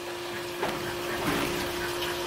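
A steady hum on one held tone over a low hiss, with a faint knock about half a second in.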